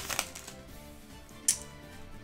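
Faint background music, with the quiet handling of freshly unwrapped Yu-Gi-Oh! trading cards and their foil booster wrapper. One short, sharp crackle comes about one and a half seconds in.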